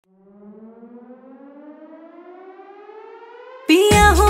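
A quiet rising tone with several overtones, climbing slowly and steadily like a siren winding up, as a song intro. Just before the end, a loud Rajasthani folk DJ track cuts in suddenly with heavy bass and a melody line.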